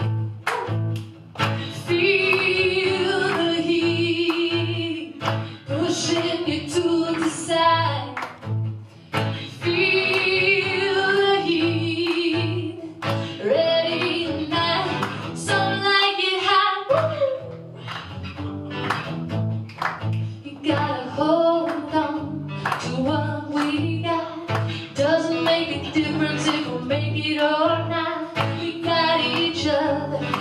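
A woman singing to her own acoustic guitar strummed in a steady rhythm. Her voice holds long notes with vibrato, and the strumming breaks off briefly about halfway through.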